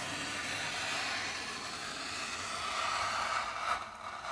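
X-Acto craft knife drawn along a ruler, slicing through leather in one long steady cut with a scraping hiss that fades out near the end.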